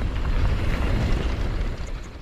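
Wind rushing over a helmet-mounted action camera's microphone, with mountain bike tyres rolling on a dirt trail during a descent. The noise starts to fade near the end.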